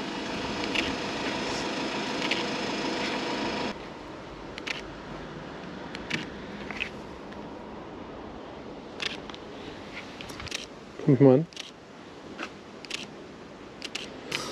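Leica SL2-S shutter firing single frames: about eight or nine short, sharp clicks spaced roughly a second apart. Before them a steady machine-like hum runs and cuts off suddenly about four seconds in.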